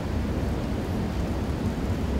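Steady low rumble and hiss of a large hall's room noise, with no distinct events.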